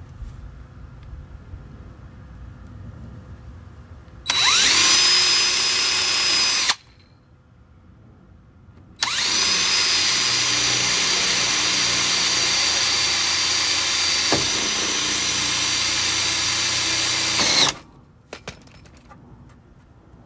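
Electric drill boring a 1/8-inch pilot hole through the van's sheet-metal pinch weld. There is a short run of about two seconds, then a pause, then a long steady run of about nine seconds. Each run opens with a quick rising whine as the motor spins up.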